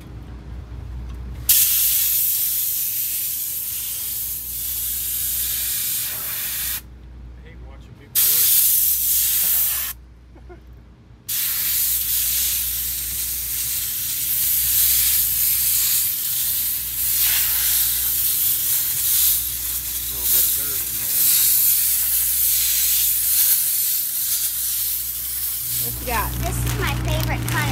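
Pressurized spray hissing in long bursts over a race car's engine. It starts a second or two in and cuts out briefly twice, around 7 s and 10 s, before running on.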